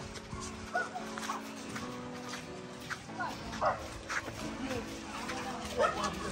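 A dog barking and yelping a few short times, over soft sustained background music.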